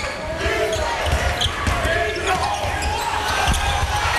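A basketball bouncing on the court during play, with low thumps, the clearest about three and a half seconds in, over the steady noise of an arena crowd.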